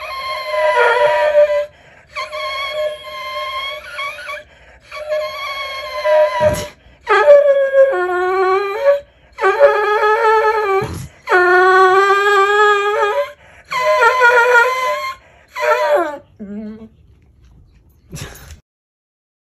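A hound dog howling: a series of about eight long, drawn-out howls of a second or two each, the last few shorter and dropping in pitch. Two short knocks come in between the howls.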